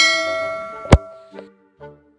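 Subscribe-button animation sound effects: a bell-like ding that rings and fades, then a sharp mouse click about a second in, the loudest sound, followed by a few short faint tones.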